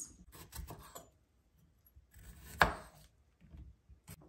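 Kitchen knife slicing the stems off strawberries on a wooden cutting board: a few light taps in the first second, then a short cut ending in one sharp knock of the blade on the board a little after halfway.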